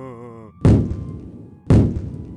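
A wavering held tone fades out, then two heavy thuds about a second apart, each ringing out as it decays: dramatic impact hits on the soundtrack.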